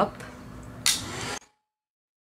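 A short knock from a hand-held plastic heat gun being handled, after the last syllable of speech, over faint room tone; about a second and a half in, the sound cuts off to dead silence.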